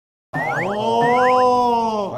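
Comic sound effect added in editing: quick rising boing glides over a held tone that swells slightly up and back down, starting after a brief moment of silence.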